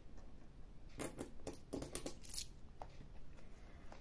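Euro coins clicking faintly against each other as a few are picked up by hand from the cloth and the coin stacks. There are a handful of light clicks between about one and two and a half seconds in.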